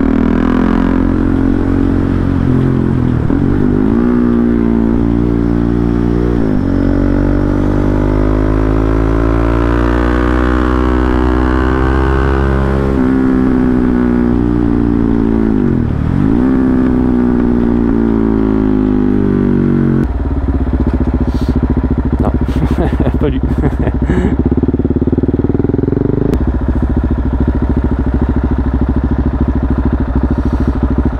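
KTM Duke 690 single-cylinder engine, with an Akrapovic exhaust and a decat link, heard from the saddle while riding. Its pitch rises and drops through gear changes, then holds a lower, steadier note in the last third as the bike slows.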